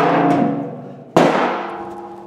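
Metal fender pan from a John Deere 318 garden tractor clanging on the concrete floor and ringing as it fades. It is struck a second time about a second in, with a sharper clang that rings on.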